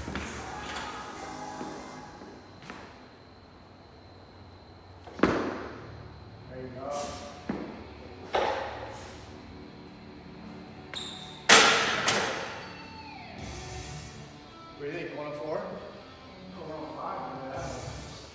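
Loaded barbell with bumper plates during a heavy jerk off a rack: three sharp thuds and clangs about five, eight and eleven and a half seconds in, the last the loudest, each ringing briefly. Voices and background music are heard under it.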